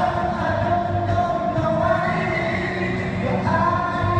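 A group of voices singing together into microphones over backing music, holding long notes that shift pitch a few times, heard through a hall's sound system.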